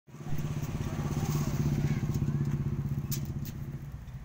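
A motor vehicle engine, like a motorcycle's, running with a steady low hum, loud at first and slowly growing fainter.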